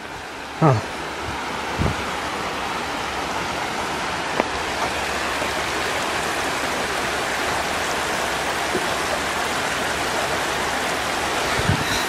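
Muddy floodwater streaming over and between flat rock shelves in a desert wadi, a steady rushing noise that swells slightly.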